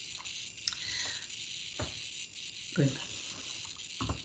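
A pause with a steady faint hiss, broken by a single sharp click a little under two seconds in, then one short spoken word near the end.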